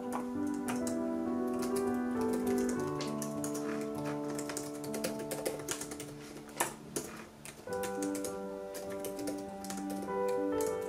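Typing on an HP laptop keyboard: quick, irregular key clicks, with soft piano music playing under them.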